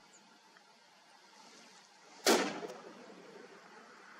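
A single shot from a Bergara Premier Highlander rifle in .300 Winchester Magnum fitted with a muzzle brake, sharp and loud a little over two seconds in, its report rolling away over about a second.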